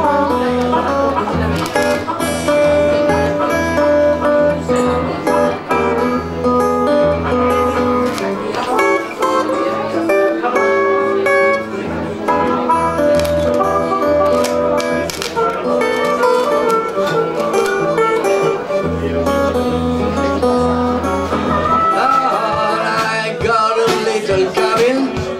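Acoustic guitar and harmonica playing a blues instrumental break with no singing, the harmonica holding long notes over the guitar's strummed accompaniment.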